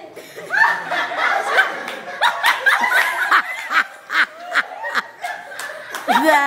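A group of young people laughing together, several voices overlapping in short bursts, swelling about half a second in.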